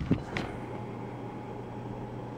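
Steady low hum and hiss of a quiet room, after a brief knock of the camera being handled near the start.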